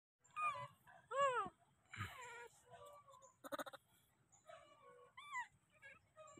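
Baby macaque calling: a few short, high coos that rise and fall in pitch, the loudest about a second in, with a quick rattle of clicks midway.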